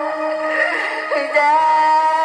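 Amplified folk singing through a microphone: long held notes that bend and slide in pitch, over a steady keyboard accompaniment.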